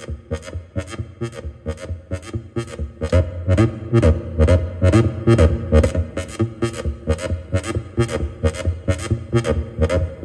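Techno-style electronic jam: an Arturia MicroBrute analog synthesizer playing a sequenced bass line under a steady beat of sharp ticks about two a second. The bass grows louder and fuller from about three seconds in as its knobs are turned.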